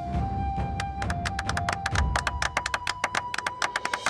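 Background music from a TV drama's score: a held tone under quick percussive taps that speed up and crowd together from about a second in.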